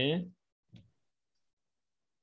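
A man's voice ending a word, then one faint short click a little under a second in, and otherwise silence.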